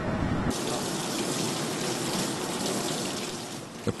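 Water running from a tap onto hands being rinsed, cutting in suddenly about half a second in after a low rumble and easing slightly near the end.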